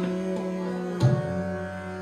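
Hindustani classical music in Raag Yaman: harmonium and tanpura holding steady notes. A single sharp tabla stroke comes about a second in, followed by a deep ringing bass-drum tone.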